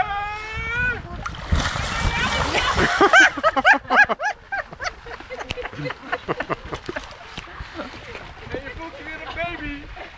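Water splashing and the plastic skin of an inflatable water-walking ball rustling and clicking as the person inside stumbles and goes down on her hands and knees. Voices are heard over it, loudest in the first few seconds.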